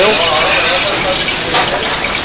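Steady sizzling hiss of frying in a restaurant kitchen, with a sauté pan and its oil being brought up to very high heat.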